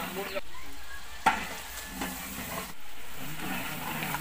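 Metal spatula stirring and scraping thick curry in a large metal pot over a wood fire, with the food sizzling. One sharp metallic clank about a second in is the loudest sound.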